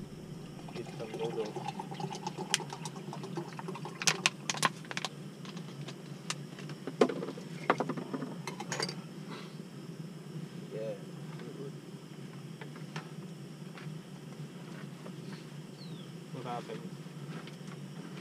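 Knocks and clinks of cookware as more water is added to a pot on a camping stove, loudest in a cluster about four to five seconds in and again around seven to nine seconds, over a steady low rumble.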